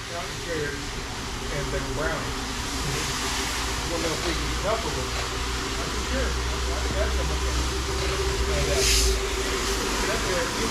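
Rotary single-disc floor machine running steadily, its brush scrubbing through thick shampoo suds on a wool rug, with a low motor hum. There is a short hiss about nine seconds in.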